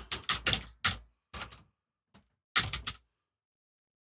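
Computer keyboard keys clicking as a short name is typed: about a dozen quick, irregular keystrokes, with a pause of about a second near the middle.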